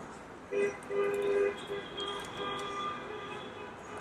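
Faint vehicle horns held in a long, steady two-note blast that starts about half a second in and fades near the end: cars honking out on the highway.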